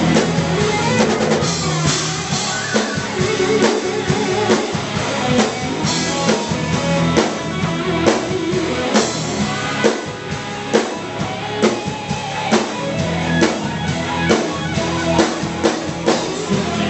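Live rock band playing an instrumental stretch: electric guitars over bass guitar and a drum kit keeping a steady beat.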